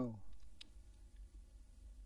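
A man's spoken word trailing off at the very start, then a quiet low hum with a few faint clicks.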